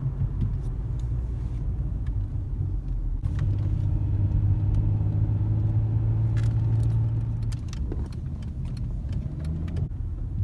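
Dodge Challenger's engine and road noise heard from inside the cabin while driving: a low rumble, with a steadier engine hum from about three to eight seconds in. A few faint light clicks are scattered through it.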